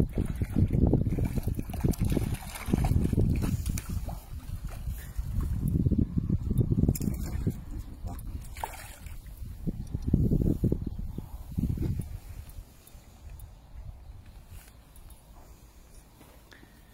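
Water sloshing and splashing as a hooked trout is played at the surface and brought to a landing net, coming in several surges, then quieting near the end.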